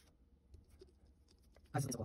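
Faint rustling and light ticks of a sheet of paper being handled, then a woman's short voice sound near the end.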